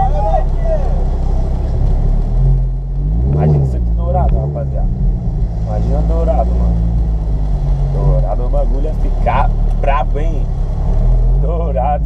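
Audi R8's mid-mounted engine heard from inside the cabin, running with a steady low note that rises briefly as it picks up revs about three seconds in and again near the end.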